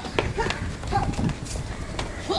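Quick footfalls and thuds of shoes on brick paving as people run in and jump, a few sharp impacts spaced irregularly, with short bits of voice between them.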